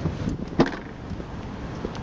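A Honda Jazz hatchback's tailgate being pulled down and shut, one solid thud about half a second in, amid rustle from handling.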